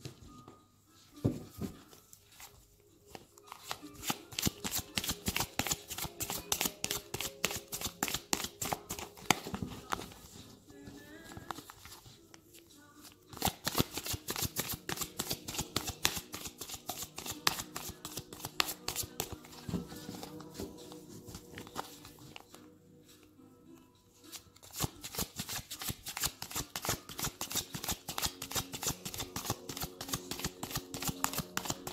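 A deck of tarot cards being shuffled by hand: a rapid patter of card clicks in long bouts, broken by short pauses about a third of the way through and again about three-quarters of the way through.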